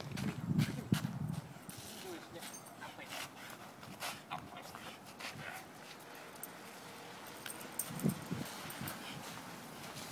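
Dogs moving about in snow: scattered short crunching steps, with a brief low vocal sound near the start and another about eight seconds in.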